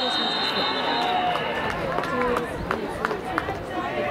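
A referee's whistle blows one long blast that ends the play and stops about a second and a half in, under many voices shouting and calling across the field. A few sharp clicks come near the end.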